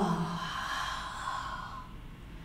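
A woman's long audible exhale, a breathy rush lasting about a second and a half and fading away, breathed out in time with the move from plank into downward-facing dog.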